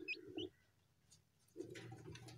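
Newly hatched chick giving two short, faint high peeps under a brooding hen.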